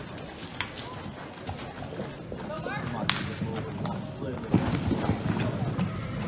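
A horse galloping in a pole-bending run on soft arena footing. The hoofbeats are loudest about four and a half seconds in, with a few short shouts from a person.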